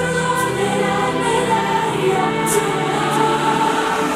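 Pop-rock song in a quiet passage: layered, choir-like sung harmonies hold long notes, with no drum beat.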